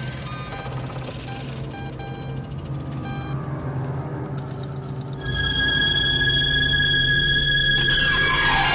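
Electronic intro music and sound design: a run of short electronic beeps over a low hum, then, about five seconds in, a louder steady drone with two held high tones.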